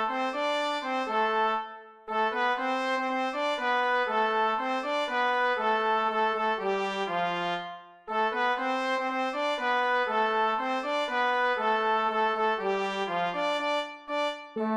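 Brass band arrangement of a Bolivian cueca melody: trumpet leading, with a lower brass part and alto saxophone following the same line, played back from the score. The tune breaks briefly twice at the ends of phrases.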